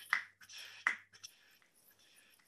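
Two short, sharp clicks about three-quarters of a second apart, at low level.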